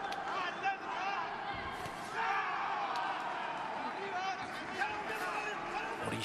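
Several voices in a boxing arena shouting and calling out over one another, with a few sharp thuds of punches landing in an exchange at close range.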